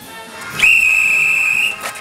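A single long, steady whistle blast, starting about half a second in and lasting just over a second, with music playing faintly underneath.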